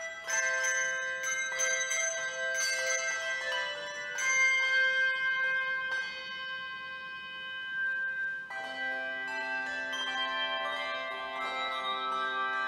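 Handbell choir ringing brass handbells: a run of quick struck notes in the first few seconds, then a chord left ringing, and a new, lower chord struck about eight and a half seconds in, with more notes added over it.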